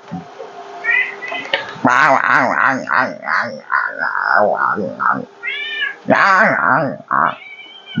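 House cats meowing over and over, several calls overlapping, as they beg to be fed.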